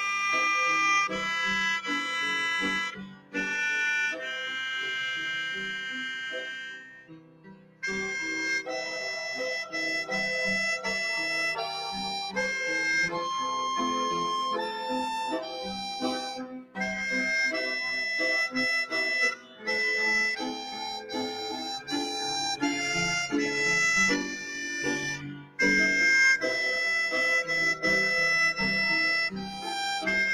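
A melodica plays a slow melody in held notes, one to two seconds each, with a keyboard accompanying underneath. About seven seconds in, a long note fades away, and the melody starts again shortly after.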